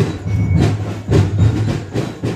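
Live fiesta music from street musicians, with a steady deep beat about twice a second.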